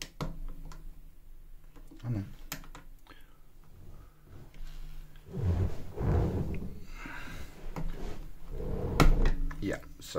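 Plastic Lego pieces clicking and knocking as they are handled and pressed together. An indistinct voice comes in during the second half.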